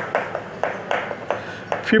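Chalk tapping and clicking against a blackboard as letters and numbers are written: a quick series of sharp taps, several a second.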